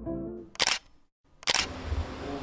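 Background music ends, then two short, loud bursts of noise about a second apart, from a transition sound effect laid over the edit cut.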